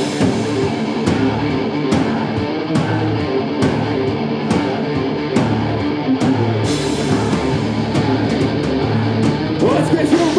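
Metal band playing live at full volume: heavily distorted electric guitars over drums, with a hard cymbal-and-drum hit landing a little faster than once a second.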